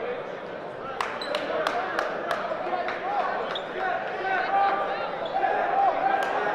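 Basketball dribbled on a hardwood gym floor, about three bounces a second, starting about a second in, over a crowd chattering in the gym.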